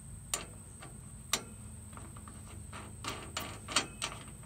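Small metallic clicks as a brass lead eyelet is slipped onto a welder's output stud and the nut is started on the thread: two single clicks, then a quick run of clicks near the end.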